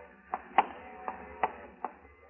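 Radio sound-effect footsteps: about five short, sharp footfalls on a hard floor, unevenly spaced at roughly two a second, as people creep through a room.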